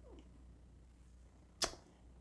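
Quiet room tone with a faint steady low hum, broken by one brief sharp click about a second and a half in.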